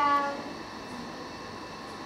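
A woman's voice holding the last syllable of a question, then a steady, faint room hum with a thin constant whine under it.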